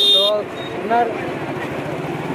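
Steady vehicle engine and street noise with two brief fragments of a man's speech, and a short high-pitched beep right at the start.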